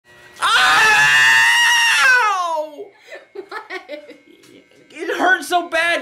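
A man lets out a long, high-pitched yell of about a second and a half, its pitch sliding down at the end, as hair clippers pull at his hair. Short laughing syllables and talk follow.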